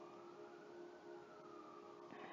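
Near silence with a faint siren in the background, its wail slowly rising in pitch and then falling away.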